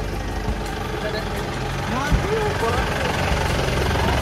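A vehicle engine idling with a steady low hum, with people talking faintly in the background.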